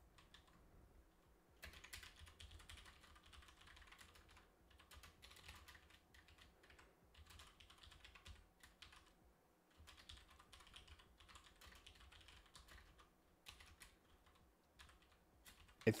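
Faint computer keyboard typing: a long run of quick keystrokes with brief pauses, starting about a second and a half in and tapering off near the end.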